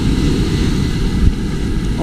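Wind rumbling steadily on the microphone, over the wash of the surf.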